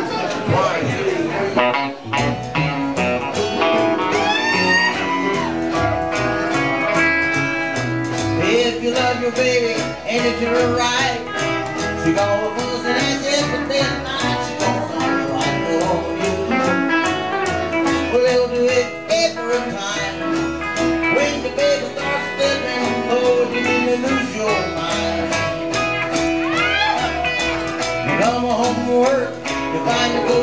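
Live country band playing a song, with a plucked upright bass and guitar; the band comes in right at the start, with a brief break about two seconds in.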